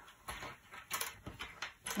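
Jigsaw puzzle pieces being sorted by hand on a tabletop: a few light, scattered clicks as pieces are pushed and picked out of the pile.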